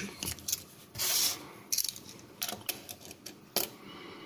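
Small Czechoslovak Mikov slip-joint pocket knife with a stamped sheet-metal handle being opened and laid down: a series of small metal clicks, a short scraping rub about a second in, and a sharper click near the end.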